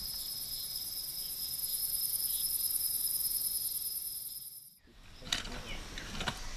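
Night-time insect chorus: a dense, steady high-pitched trill with a thin steady whistle-like tone beneath it. It fades and cuts off abruptly about five seconds in, leaving a few faint clicks.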